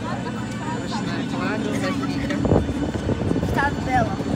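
Steady low hum of a parked airliner on the apron, with people talking over it and a brief thump about two and a half seconds in.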